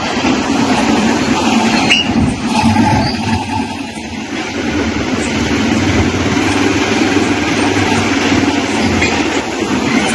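Loud, steady mechanical rumble of a heavy vehicle running, with a low hum underneath; it cuts off abruptly at the end.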